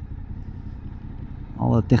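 Motorcycle engine running at low revs, a steady low rumble picked up on the rider's own bike. A man starts speaking near the end.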